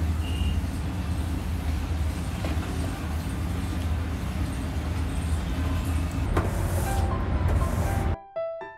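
A steady low rumble, with one sharp knock about six and a half seconds in.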